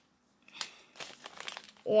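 Paper rustling and crinkling as a folded paper fortune teller and its sheet are handled, in a few soft, irregular scrapes.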